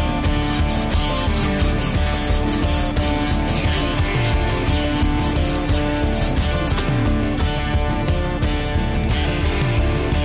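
Bow saw cutting through a log in quick, even back-and-forth strokes that stop about seven seconds in. Guitar music plays underneath throughout.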